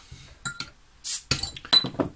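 Metal bottle opener clinking against a glass beer bottle as the crown cap is prised off, with a short hiss of escaping gas about a second in, followed by a few more sharp clinks.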